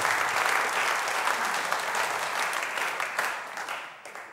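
Audience applauding, fading away near the end.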